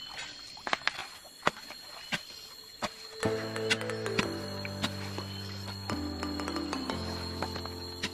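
Stones and gravel clicking and knocking as they are scooped by hand out of a shallow streambed pit. About three seconds in, background music with sustained, changing chords comes in and stays louder than the knocks, which carry on beneath it.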